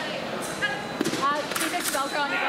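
Fencers' shoes on the strip during footwork: short squeaks and a few sharp thuds, over the chatter of a large hall.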